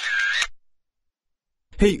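A short camera-shutter sound effect lasting about half a second, followed by about a second of dead silence. A voice comes in near the end.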